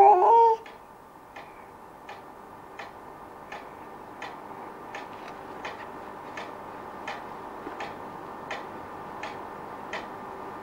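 A brief voice sound at the very start, then a clock ticking steadily, about three ticks every two seconds.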